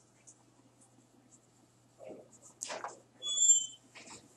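A quiet room with a low steady hum and a few faint clicks, then a brief high-pitched squeak a little past three seconds in.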